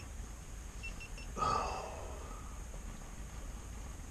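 A man's frustrated sigh, one short breathy exhale about a second and a half in, over a steady low hum.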